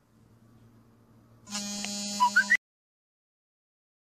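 A faint low hum, then about a second in a loud, buzzy, many-toned electronic sound lasting about a second, like a short musical sound effect. A few quick rising blips come near its end before it cuts off abruptly into silence.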